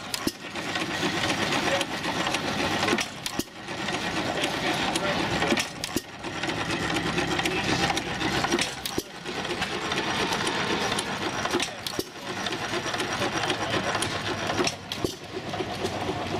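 Antique stationary gas engines running with a steady, rapid mechanical clatter. The sound dips briefly every three seconds or so.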